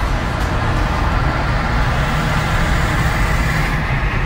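Steady road and engine noise of a car driving at speed, heard from inside the cabin.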